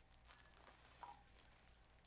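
Near silence: room tone, with one very faint short sound about a second in.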